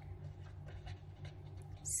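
Felt-tip marker writing on paper: faint, scattered scratches and squeaks of the tip as a word is written, over a steady low hum.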